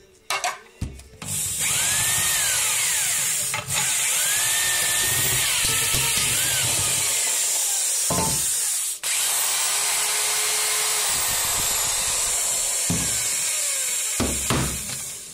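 Handheld electric drill running at high speed, its motor pitch rising and falling as it takes load. It cuts out briefly about nine seconds in and starts again.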